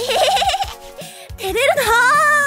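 A woman's acted, embarrassed giggle, "ehehehe", with a quickly bobbing pitch, followed by a few spoken words ("tereru", "how embarrassing") over light background music.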